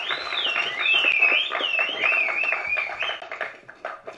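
Audience clapping, with a loud whistle that wavers up and down in pitch over it for about three seconds. The clapping dies away near the end.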